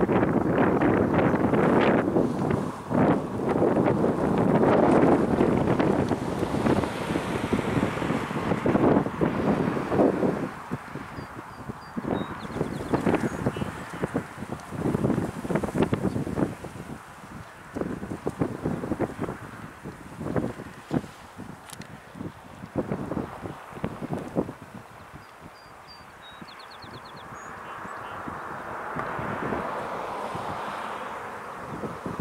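Wind buffeting the microphone in gusts: heavy for the first ten seconds, then easing into scattered gusts, and building again near the end.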